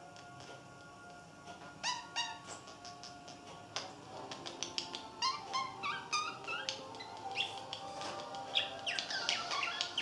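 Budgerigar chirping and warbling: a few short rising chirps about two seconds in, then a busier run of quick rising chirps from about five seconds on. This is one budgie pushing its attentions on a newly introduced cage mate. Faint steady background music runs underneath.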